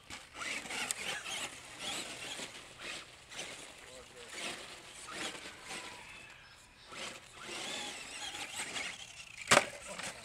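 Brushed electric motor and drivetrain of a Traxxas Stampede XL-5 RC monster truck whining, rising and falling in pitch with the throttle, driven at low speed over gravel. Near the end comes one sharp crash as the truck hits the concrete barrier and flips over.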